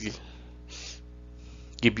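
A man's short breath in, about a second in, over a steady low hum.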